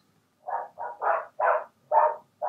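An animal's short calls repeated about three times a second, muffled, in the background.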